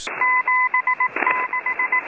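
Morse code from a shortwave numbers station: a single steady-pitched tone keyed out as two groups of dashes and dots, each group opening with a dash followed by several short dots, over a hiss of radio static. A brief crackle falls between the two groups.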